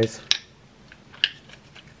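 Two short plastic clicks, a sharp one about a third of a second in and a fainter one just past a second, as the cap of a plastic projectile tube is twisted and pried at; the cap is hard to open.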